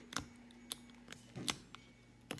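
X-Acto knife blade prying cracked rear glass off an iPhone XS Max: three small sharp clicks, the loudest near the end, as bits of glass snap away from the backing.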